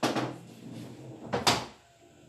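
A pocketed ball knocking and rolling inside the wooden body of a sinuca table, heard as two loud thuds: one at the start and a louder one about a second and a half in.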